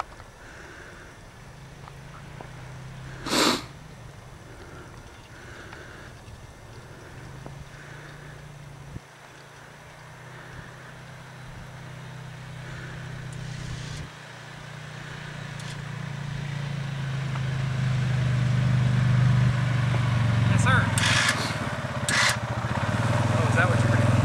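Arctic Cat ATV engine running as it plows snow, growing steadily louder as it comes closer over the second half. A brief sharp noise about three seconds in is the loudest moment.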